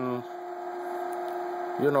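MakerBot Replicator 5th-generation 3D printer running a steady hum from its fan while the extruder heats, with a single tone plus a faint haze.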